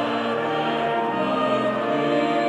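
Church choir singing in harmony, with held chords that change about once a second.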